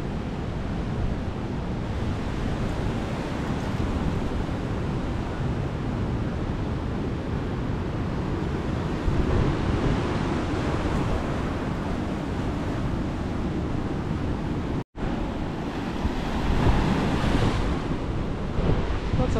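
Surf washing onto a beach in a steady rush of waves, swelling louder in the middle and near the end, with wind buffeting the microphone. The sound cuts out for an instant about three-quarters of the way through.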